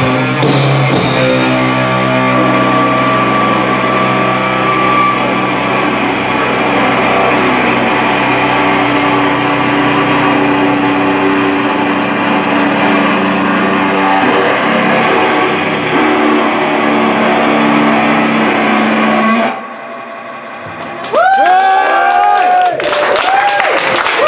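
Rock band playing live through amplifiers: cymbals crash in the first couple of seconds, then the electric guitars hold ringing, sustained chords that cut off abruptly near the end. After a short lull the audience cheers and claps.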